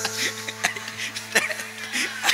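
Stage band music: a low note held steady under two sharp percussive hits about three quarters of a second apart.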